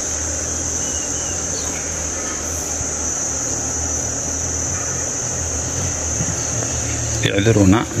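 Steady, high-pitched insect trill that runs on without a break, with a low hum beneath it. A man's voice starts speaking near the end.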